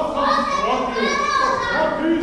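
Children's voices, high and loud, shouting and talking over one another, with a hall's echo.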